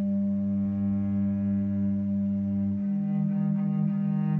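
Cello and bass clarinet improvising together in long held low notes, one note sustained throughout while the lower voice shifts to a new pitch about three-quarters of the way through.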